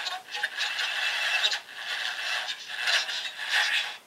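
Scratchy, crackling electronic noise from a ViewSonic G Tablet's small speaker while it boots a freshly flashed ROM and its screen shows garbled static. The noise cuts off suddenly at the end as the screen goes blank.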